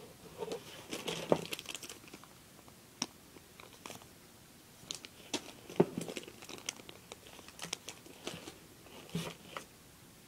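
Hands rummaging through a pile of small novelty erasers: irregular light clicks and knocks with bits of rustling, two sharper knocks standing out about a second in and near the middle.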